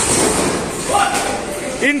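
Table tennis rally: a ping-pong ball knocking back and forth off paddles and the table, with a man's voice calling out near the end.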